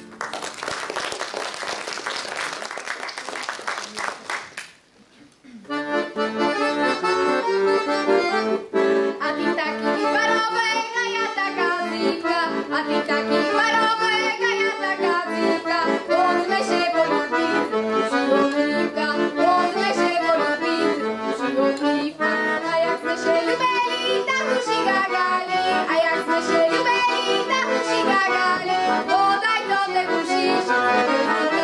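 Audience applause for about four and a half seconds, a short hush, then an accordion starts a lively folk tune, a quick-moving melody over chords, and plays on.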